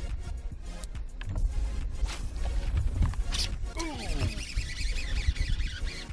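Wind buffeting the microphone, with a sharp splash about three seconds in as a largemouth bass hits a swimbait on the surface. A man's falling exclamation follows.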